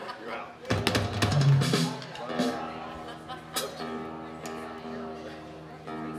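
A short flurry of drum-kit hits about a second in, then guitar notes ringing on steadily, with a few light clicks.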